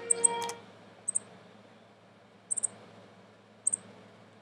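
A small bird giving short, very high chirps in quick clusters of two or three, four times over a few seconds.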